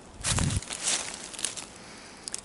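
Footsteps and rustling in dry fallen leaves on a forest floor, with a dull thump about half a second in.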